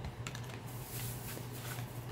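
A quick, irregular series of light clicks and taps from packaged cosmetic items being handled and set down, over a steady low hum.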